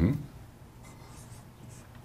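Dry-erase marker writing on a whiteboard, a few short, faint strokes about a second in.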